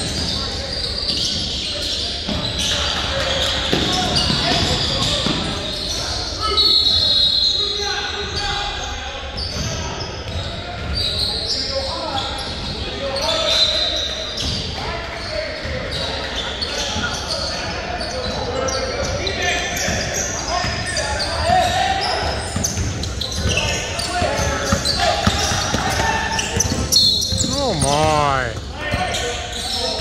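Basketball game sounds on a hardwood gym floor: a ball being dribbled and bouncing, indistinct voices, and a few short high squeaks, all echoing in a large gym.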